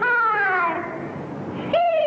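A male Peking opera dan performer singing in a high falsetto. A long sung note glides downward and fades, and a new note starts sharply near the end.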